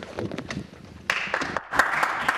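Applause from a small group of people, with separate hand claps audible, breaking out suddenly about a second in.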